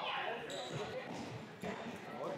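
Voices echoing in a large indoor sports hall where cricket net practice is going on, with a single sharp thud about one and a half seconds in.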